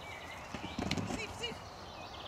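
A dog agility run: a handler's short spoken command with a quick patter of knocks in the middle as the dog runs through the course, with birds chirping in the background.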